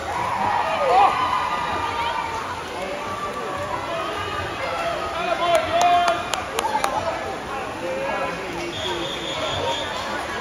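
Spectators cheering and shouting over one another during a swimming race, no single voice clear. There are a few sharp clicks around the middle and a short high steady tone near the end.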